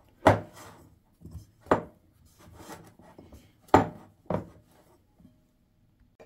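Hands kneading a soft, sticky yeast dough in a ceramic bowl: about four sharp strokes of the dough being pressed and slapped against the bowl, with faint rubbing between them. The sounds stop about a second before the end.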